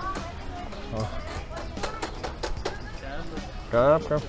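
Street-market ambience: background voices and music, with scattered light clicks and clatter.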